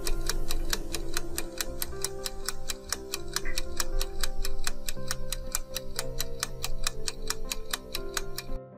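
Countdown-timer sound effect: fast, even clock-like ticking over background music with held notes, marking the seconds of a countdown.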